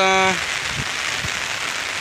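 Heavy, steady rain falling and pattering on an umbrella held just over the microphone, after a man's voice trails off at the very start.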